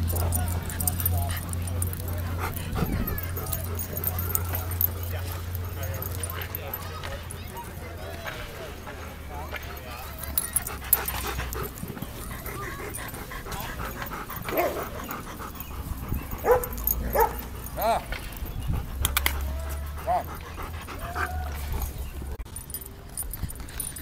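Low rumbling handling noise from a phone pressed against a Bernese mountain dog's long coat, the fur brushing over the microphone. In the second half, a dog gives a few short yips and whines.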